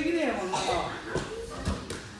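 Voices talking over a few dull thuds of judoka's feet and bodies on tatami mats during randori sparring, about three thuds in two seconds.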